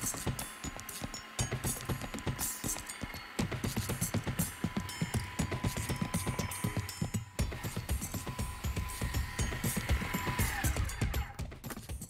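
Food processor motor running steadily as it blends a thick rice-and-meat paste, a steady whine that winds down in pitch about ten and a half seconds in as it is switched off. Background music with a beat plays along.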